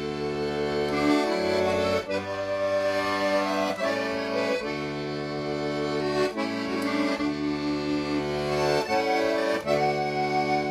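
Piano accordion played solo: a traditional folk tune on the right-hand keyboard over held bass and chord accompaniment from the left-hand buttons, the bass notes changing every second or two.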